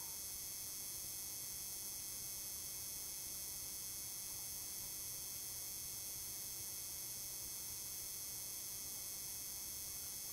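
Steady faint hiss with a constant electrical hum and whine: the background noise of a webcam microphone in a quiet room, unchanging throughout.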